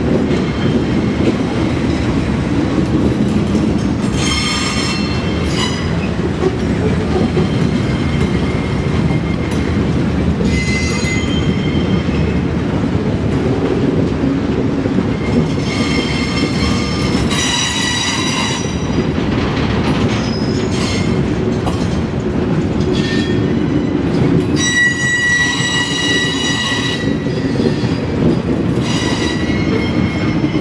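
Norfolk Southern work train rolling past: a steady rumble of wheels on rail, broken by about six bursts of high-pitched wheel squeal lasting one to three seconds each, the longest around the middle and near the end.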